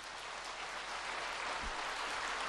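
A large audience applauding in a big hall, the clapping slowly building.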